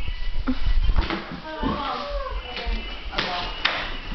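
Girls' voices in an empty room, not in clear words, with a drawn-out vocal sound about two seconds in. Low bumps from a handheld camera and footsteps run under them, and there is a short burst of hiss about three seconds in.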